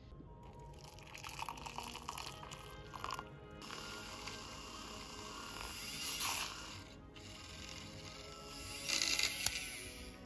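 Handheld battery milk frother whisking matcha in a glass mug: a hissing, frothy whir that swells twice and stops near the end.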